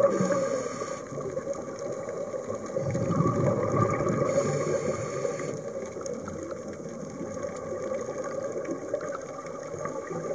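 A scuba diver's regulator breathing, heard underwater. A hiss on each inhalation comes near the start and again about halfway through, each following a surge of bubbling rumble from the exhalation. The sound settles to a steadier, quieter bubbling in the second half.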